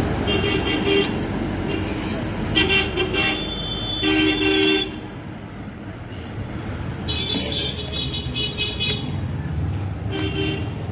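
Street traffic: a steady rumble of engines with vehicle horns honking repeatedly, first about half a second in, then from about two and a half to five seconds, and again from about seven to nine seconds.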